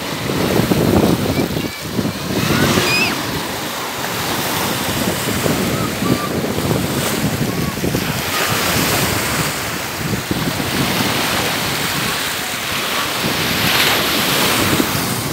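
Small sea waves washing in over the sand at the shoreline, a steady rush of surf, with wind buffeting the microphone.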